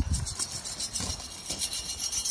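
Fish, blood and bone fertiliser pellets scattered from a metal hand scoop onto soil: an irregular light patter and rattle.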